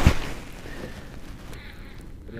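A knock of clothing against a body-worn camera's microphone, then a rustling rush that fades away over a second or so.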